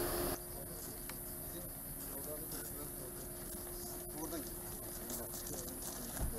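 Faint outdoor background with a thin steady hum, a few light clicks and indistinct men's voices in the distance.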